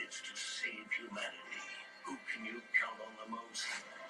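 Television audio: a voice talking over background music.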